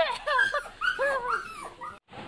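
A run of short, high whimpering yelps that rise and fall in pitch, like a dog's, about six in two seconds.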